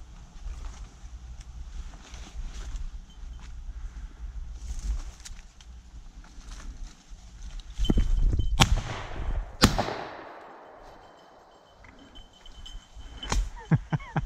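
Two shotgun shots about a second apart, the second trailing off in a rolling echo through the woods, after the bird flushes from the dog's point. Before them comes the rustle of brush and leaves underfoot.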